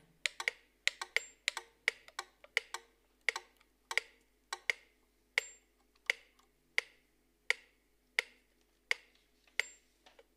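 Sharp, woody hand-played percussive clicks, each with a short ring. They come at an uneven pace of about two to three a second, then slow in the second half to a steadier beat of about one every 0.7 seconds.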